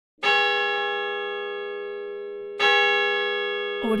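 A large church bell struck twice, about two and a half seconds apart, each stroke ringing on with many overtones and a slow fade.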